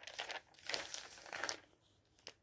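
Page of a thin-paper Aldi supermarket flyer being lifted and turned, in three short rustles that die away about three-quarters of the way through.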